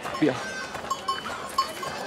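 Livestock bleating in short, wavering pulses at one pitch, over market background.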